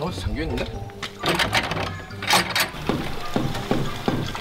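Hammer blows ringing out several times against a background music bed.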